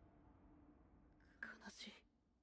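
Near silence, then a brief faint whispered voice in the last half second.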